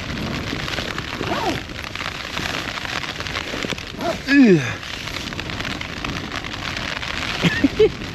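Heavy storm rain, a dense steady hiss, pelting down outside an open tent door and on the tent's fabric.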